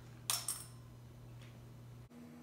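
LECA clay pellets dropping into a stainless steel bowl: a brief double clatter with a faint metallic ring about a third of a second in, then a single faint tick about a second later. A low steady hum runs underneath.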